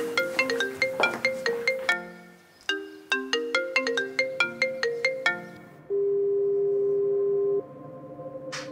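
Phone ringtone: a quick, marimba-like melody of short struck notes that breaks off and plays again, followed about six seconds in by one steady held tone.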